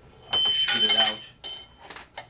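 Metal ring shot off the iron core of an AC-powered coil in a jumping-ring demonstration: a sudden metallic clink about a third of a second in, ringing like a bell for about a second before fading.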